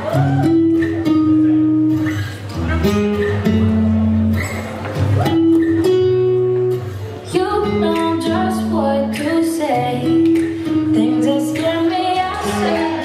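A recorded song with guitar and singing, played over loudspeakers in a large hall as dance music.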